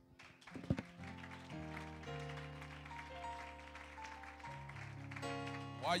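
Soft, sustained keyboard chords, held notes shifting every second or so, coming in about a second in after a couple of faint knocks.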